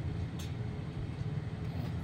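Steady low background hum, with one faint light tick about half a second in.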